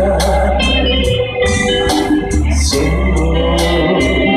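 Instrumental backing music for a ballad with no vocal line: sustained organ-like keyboard chords over a steady bass and a light regular beat.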